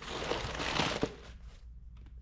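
A cardboard box being opened and handled, its packaging rustling for about a second and a half with a sharp click about a second in.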